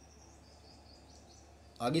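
Faint bird chirping in the background, a few short high notes, over a quiet room; a man's voice starts near the end.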